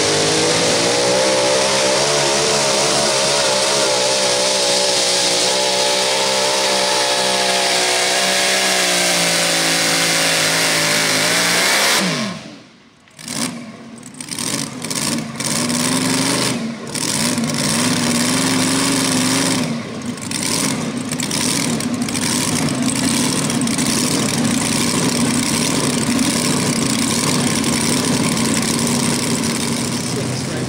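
Supercharged engine of a mini rod pulling tractor running at full throttle under load, its pitch wavering as it pulls. About twelve seconds in the pitch falls away and the engine cuts out sharply, then it runs on at a low, uneven idle.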